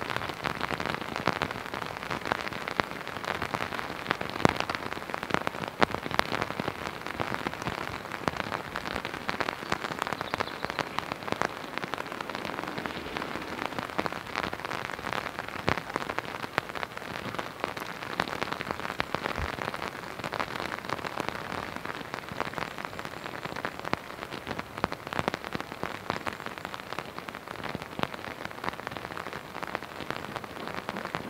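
Steady rain falling, with a constant hiss and many close drops ticking sharply.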